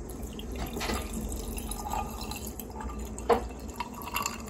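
Cold brew coffee being poured in a steady stream over crushed ice in a glass tumbler. A few light clicks are heard, with one sharp click about three seconds in.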